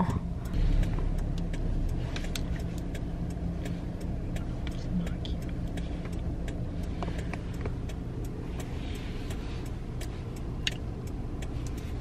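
Steady low engine and road hum inside a Toyota's cabin in slow city traffic, with light clicks scattered through it.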